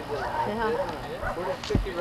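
Indistinct voices talking, with a single sharp knock near the end.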